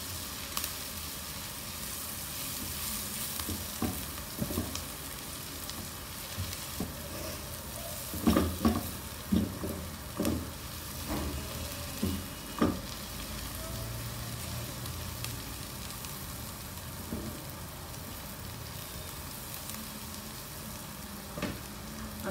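Chopped onions sizzling in hot mustard oil in a non-stick frying pan, a steady hiss as they begin to brown. From about eight seconds in, a spatula stirs and scrapes through them several times against the pan.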